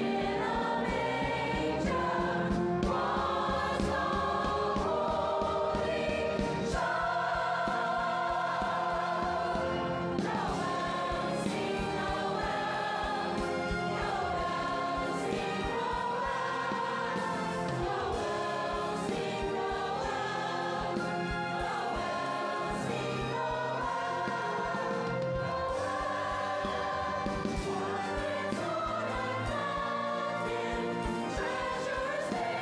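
Large mixed choir of men and women singing in harmony, holding sustained chords that move from note to note at a steady loudness.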